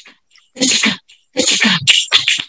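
A woman's voice: two short breathy vocal bursts, each about half a second long and falling in pitch.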